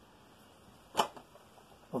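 Near silence broken once, about halfway through, by a single short, sharp click.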